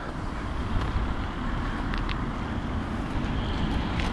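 Steady outdoor background noise with an uneven low rumble, and a couple of faint ticks.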